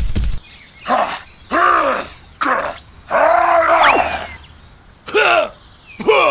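A run of short cartoonish voice cries laid on as sound effects, about five of them, each rising and then falling in pitch, the longest in the middle with a whistling glide over it. A brief low rumble with clicks cuts off just after the start.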